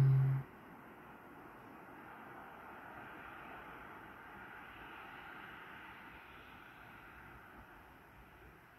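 A person hums a short, steady closed-mouth 'mm' in the first half second. Then only faint, steady background noise, swelling slightly in the middle and easing off near the end.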